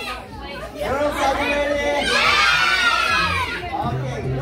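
A group of children shouting and cheering over one another while pulling in a tug of war, the voices swelling louder about two seconds in.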